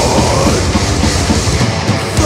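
Death metal played live on distorted electric guitars and a full drum kit, with fast, steady bass drum strokes under the guitars.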